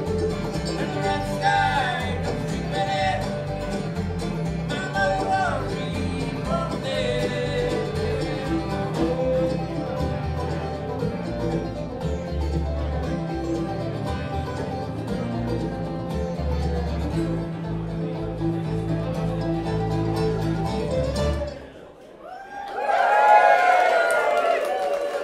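Live acoustic bluegrass band (banjo, fiddle, upright bass, acoustic guitar and mandolin) playing, the tune stopping about twenty-two seconds in. Loud voices follow right after it ends.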